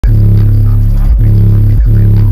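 Car-audio subwoofers playing a track with long, very loud held bass notes, broken by brief gaps about a second in and near the end. The bass is heavy enough to pull the car's voltage down from 13.5 to about 11 volts.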